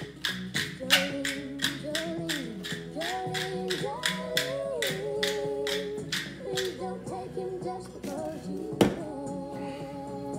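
Hand pepper mill grinding peppercorns in quick repeated twists, about three or four gritty crunches a second, stopping about six and a half seconds in. Background music with singing plays throughout, and a single sharp knock comes near the end.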